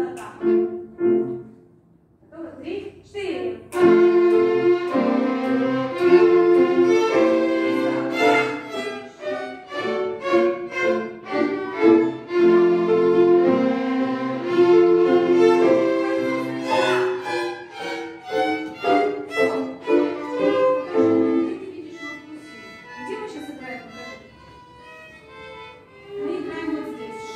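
Children's violin ensemble playing a passage together, several violins sounding different notes at once. It starts about four seconds in after a brief word from the teacher, runs on loudly, and thins out and trails off near the end.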